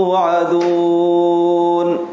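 A man recites the Qur'an in melodic tajwid chant. He holds one long, steady vowel note that breaks off just before the end.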